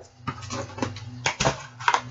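Cardboard subscription box being opened by hand: several short, sharp clicks and knocks of flaps and packaging, over a faint steady low hum.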